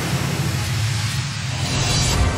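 Newscast ident sting: a steady rushing whoosh over a low rumble, swelling near the end as it leads into the program's theme.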